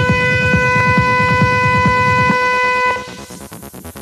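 Electronic music from hardware synths: one held, steady synth tone over a fast pattern of rumbling kick drums. The kicks stop a little over two seconds in and the tone cuts off near three seconds, leaving a quieter pulsing synth pattern.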